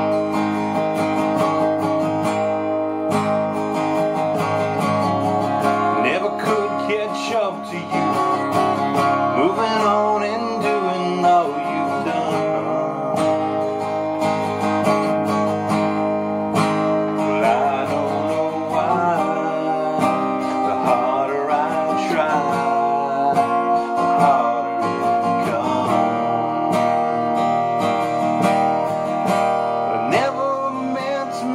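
Acoustic guitar strummed steadily in chords, with a man's voice singing over it in stretches.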